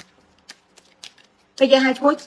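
A woman speaking Khmer starts again after a short pause of about a second and a half. The pause holds a few faint clicks.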